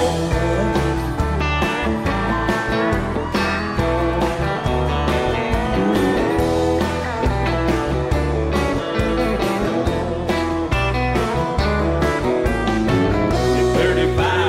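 Instrumental break in a country song: a guitar lead over bass and a steady beat, with no singing.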